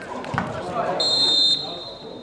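A referee's whistle blown once for about half a second, a steady shrill note, with players' shouts on the pitch just before it.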